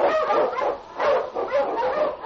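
A team of huskies barking and yelping together, a radio-drama sound effect on an old broadcast recording.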